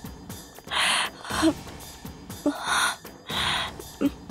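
Dramatic TV-serial soundtrack: a string of short whooshing swishes, about four in a few seconds, over soft background music.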